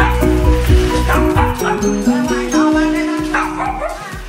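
Small dogs yapping and yipping in quick short calls from about a second in, over background music with a steady bass line.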